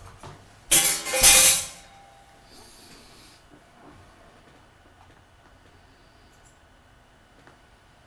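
A metal rimmed baking sheet and wire cooling rack clattering as they are set down: two loud clanks close together about a second in, with a brief metallic ring, followed by a faint rustle and then quiet room tone.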